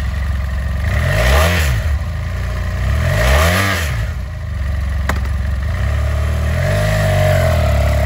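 2016 BMW F800R's parallel-twin engine idling, blipped twice so the revs rise and fall, with a single sharp click about five seconds in. Near the end the revs rise again and hold as the bike pulls away.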